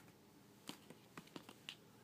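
Hollow plastic ball-pit balls tapping against each other as a baby handles them: a scattered run of about six faint, light clicks in the second half.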